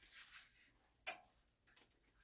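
Clothes hanger clicking on a metal clothing rack rail as trousers are hung up and the next pair is taken down: a soft rustle of fabric, one sharp click about a second in, then a few lighter ticks near the end.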